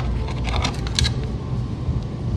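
Light clicks and rattles of a metal clutch hard line and its fittings being handled, with two sharper clicks about half a second and a second in, over a steady low hum.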